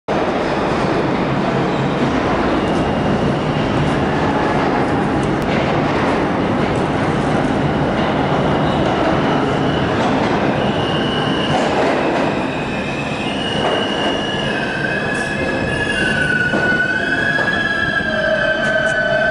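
New York City subway train coming into a station, a loud steady rumble of the train on the rails. From about ten seconds in, high wheel and brake squeals set in as it slows to a stop at the platform.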